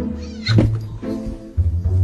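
Background music with a steady bass line, and a single cat meow about half a second in.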